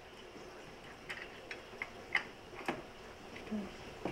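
A handful of faint, irregular light clicks and taps: small screws, washers and hard plastic gauge parts being handled and fitted while mounting digital gauge pods into an instrument-cluster bezel.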